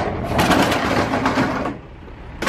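Slatted metal roll-up door of a semi-trailer being raised: a sharp click as it is released, then a fast rattle of the slats for about a second and a half that fades out.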